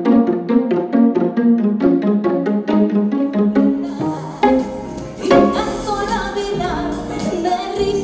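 Live stage music from a keyboard and acoustic guitar band: a quick figure of short repeated notes, about five a second, that gives way halfway through to fuller band music with a strong hit a second later.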